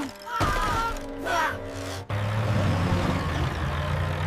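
Cartoon soundtrack of background music with brief exclaiming voices. About two seconds in, a steady low engine rumble of the animated bulldozer cuts in.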